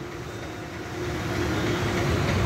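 Steady background noise of road traffic, slowly growing louder, with a faint steady hum.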